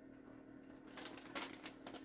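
Faint handling of butcher paper: a few soft clicks and rustles in the second second, over a steady low hum.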